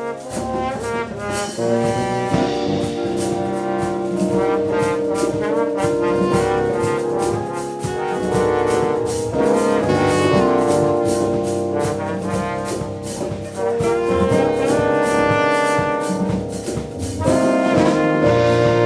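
Live band playing an instrumental: conga drums and a drum kit beating under a line of long held melody notes.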